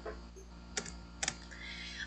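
Computer keyboard keys being pressed: a few short, sharp clicks in two close pairs about half a second apart, as the lecture slides are advanced.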